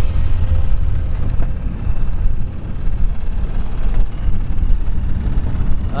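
Outboard motor running steadily as the boat trolls, heard under a loud, uneven low rumble of wind on the microphone.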